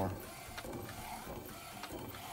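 McLaud MP1812 DTF printer running while it prints onto film, a steady quiet mechanical sound with a few faint clicks.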